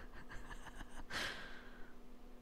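A soft, breathy exhale into a close microphone about a second in, fading out, over faint scattered clicks and a low steady hum.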